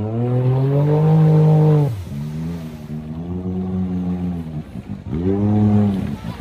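Side-by-side UTV engine revving hard in three long bursts, the pitch climbing at each and dropping away between them, as the machine sits bogged down in deep mud with its tyres spinning and throwing mud.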